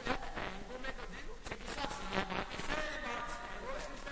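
Embolada: a male voice chanting rapid, nearly spoken verses, with a few pandeiro jingle shakes about halfway through.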